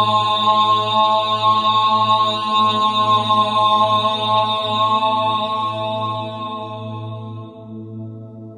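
A chanted mantra syllable held long on one steady pitch, fading away over the last two seconds.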